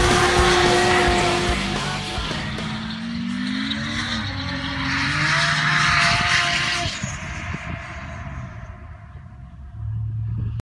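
Nissan Skyline R34 drift car's engine held at high revs through a smoky slide, with a hiss of tyre noise. The pitch drops a couple of seconds in, climbs back, holds, and then the sound fades away over the last few seconds.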